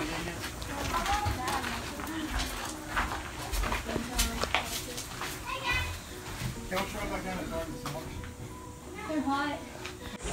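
Indistinct voices and children's chatter, with footsteps on a gravel floor inside a stone tower.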